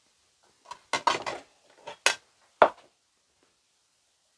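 White ceramic plate clattering as it is handled: a short cluster of knocks about a second in, then a few sharper single clinks, the loudest about two and a half seconds in.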